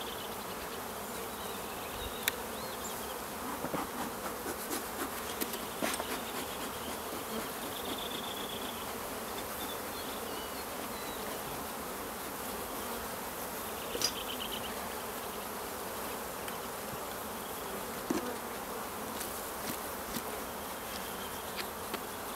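Honeybee colony buzzing steadily from an opened hive. A few light clicks and knocks stand out briefly above the hum.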